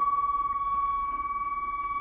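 Kone EcoSpace elevator's nudging buzzer sounding one steady high tone. It signals nudge mode, the doors being forced closed after phase 2 fireman's service is switched off.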